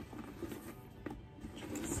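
Quiet background music, with faint handling noise and a light click about a second in as the leather drawstring bag is opened.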